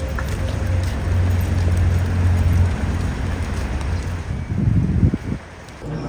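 Outdoor field-recording noise: a steady low rumble under a hiss. It swells louder about four and a half seconds in, then drops away suddenly near the end.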